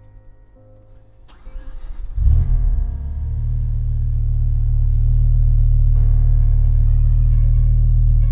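BMW E60 M5's S85 V10 engine starting: a short crank about two seconds in, catching with a loud flare, then settling into a steady deep idle.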